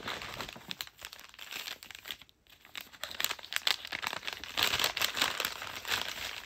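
Paper gift wrapping crinkling and rustling in the hands as a present is handled and opened. It gets busier and louder about halfway through.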